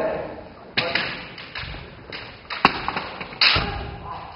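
Kendo sparring: a series of sharp knocks and slaps from bamboo shinai strikes and stamping feet on a wooden floor, mixed with the fighters' kiai shouts, each hit trailing off in the hall's echo.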